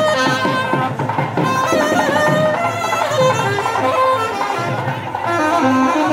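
Procession band music: a straight brass wind instrument plays a sustained melody with sliding, ornamented notes over a steady beat of drums.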